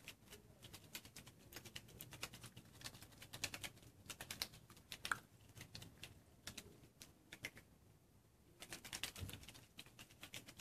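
Faint, irregular clicking and tapping from test tubes capped with balloons being shaken by hand to mix the yeast solution, with a short lull about eight seconds in.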